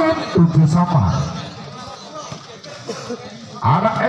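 Mostly speech: a man's commentating voice at the start and again near the end, with quieter crowd chatter in between.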